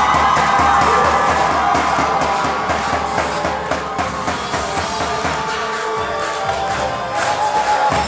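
Zaffe band music: large tabl drums beating a steady, driving rhythm under a sustained wind-instrument melody, with a crowd cheering.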